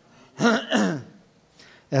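A man clearing his throat once into a desk microphone, about half a second in, with a falling voiced note.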